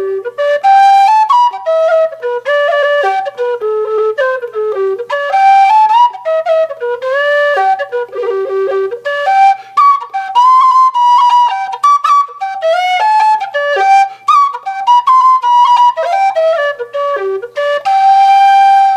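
Humphrey low G whistle playing a tune: a melody of quickly stepping notes, soft and sweet in tone.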